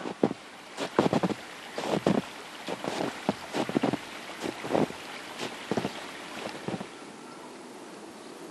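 Steady rushing, wind-like noise with a dozen or so irregular short crackles and rustles. The crackles stop about seven seconds in, leaving only a steady hiss.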